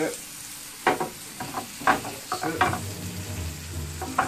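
Chopped onions sizzling in a frying pan while a wooden spatula stirs and scrapes them, with a few sharp knocks about a second apart and a low hum in the second half.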